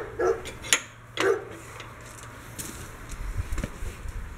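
A few light metal clinks and knocks in the first second or so as the steel drawbar hitch of a 1957 Bolens garden tractor is moved by hand on its pivot and its flip-up locking piece is worked, then a few fainter knocks near the end.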